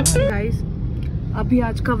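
Steady low rumble of a moving car heard from inside the cabin, under a woman talking.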